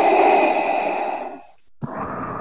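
Darth Vader's mechanical respirator breathing through the mask: one long, loud breath that stops about a second and a half in, then the next breath starting just before the end.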